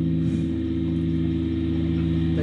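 A steady low electric drone from the band's amplifiers, held without change in pitch or level.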